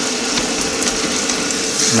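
Kitchen tap running steadily, its stream splashing onto a cauliflower in a plastic colander in a stainless steel sink.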